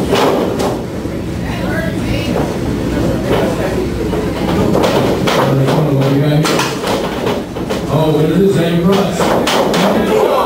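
Several sharp thuds and slaps of wrestlers striking each other and hitting the ring mat and ropes, most of them in the second half. Spectators shout and yell throughout.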